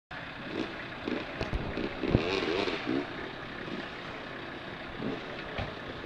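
Four-wheel-drive wagon's engine revving, its note rising and falling again and again, as it pulls forward through mud on a snatch strap to recover a stuck minibus. A few sharp knocks are also heard, the loudest about two seconds in.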